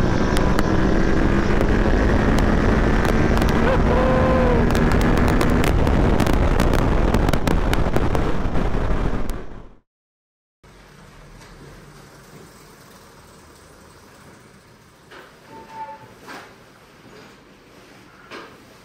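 Yamaha Ténéré 700's parallel-twin engine pulling under hard throttle in third gear, buried in heavy wind rush on a helmet-mounted microphone. It cuts off suddenly about ten seconds in. What follows is a quiet room with a few light clicks and knocks.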